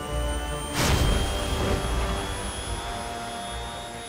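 Miniature jet engines of an arm-mounted jet suit starting up: a burst of noise about a second in, then a steady whine that slowly rises in pitch as the turbines begin to spool up.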